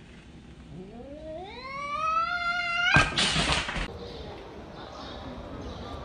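A cat's long, drawn-out yowl that rises steadily in pitch for about two seconds, then breaks into a loud, harsh hiss lasting under a second: a defensive, threatened call at a large object pushed up close to it.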